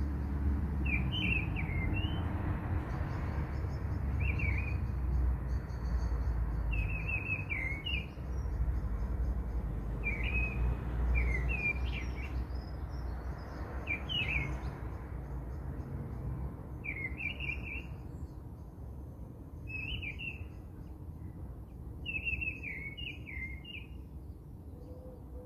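Small birds chirping, with a short twittering phrase every two to three seconds and fainter high twitters between, over a low steady rumble.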